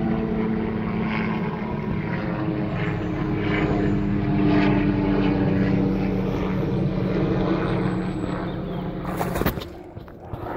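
Steady droning hum of a propeller aircraft's engines overhead, growing a little louder in the middle. Just before the end comes a short cluster of knocks from the phone being handled.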